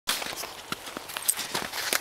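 Footsteps crunching in packed snow: a string of short, irregular crunches.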